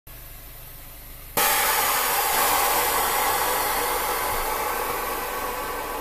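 Air suspension on an 8th-gen Honda Civic Si airing out: a loud hiss of air dumping from the bags starts suddenly about a second and a half in and slowly fades as the car drops low.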